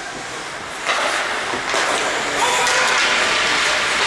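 Ice hockey game noise in a rink: a steady rush of crowd and play noise that jumps sharply louder about a second in, with faint shouts mixed in.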